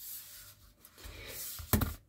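Faint rubbing and handling sounds of a hand moving small plastic and rubber model parts on a tabletop, with a short sharp knock near the end.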